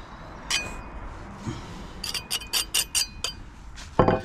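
Steel pointing tool clinking against brick and mortar: one light ringing tap about half a second in, then a quick run of about six sharp, ringing clicks a little past the middle.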